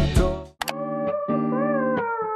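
Background music changing tracks. The first song fades out in the first half second, a short click follows, and a new song starts with plucked guitar chords and a gliding, slide-like melody line.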